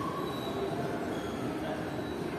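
Ambience of a large indoor shopping mall: a steady background hum with a few faint high steady tones and faint distant voices.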